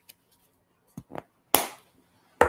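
A few short, sharp clicks and smacks close to the microphone: two small ones about a second in, then a louder one about one and a half seconds in that dies away quickly.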